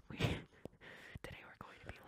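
A person whispering and breathing close into a microphone in a mock-ASMR style: one breathy whispered burst about a quarter second in, then a faint hiss with a few small mouth clicks.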